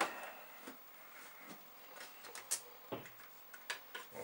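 Scattered light clicks and knocks as the plastic VIC-20 computer case is set down and its cables handled while the monitor is plugged in, the sharpest click about two and a half seconds in and a dull knock about a second later.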